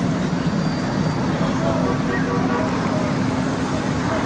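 Heavy armoured military vehicle's engine running steadily, with a steady low hum that becomes clearer about halfway through.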